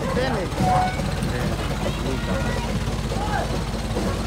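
Light truck's engine running at low speed close by, a steady low rumble, with people's voices chattering over it.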